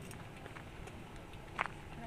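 Outdoor railway station platform ambience: low background rumble with a few scattered light clicks and taps, the sharpest one about one and a half seconds in.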